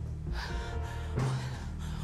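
A woman's gasp, a sharp breathy intake about half a second in, over a steady, low background music score.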